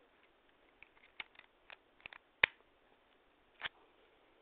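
A run of sharp clicks and taps from small hard objects being handled, about eight, irregularly spaced, the loudest about two and a half seconds in.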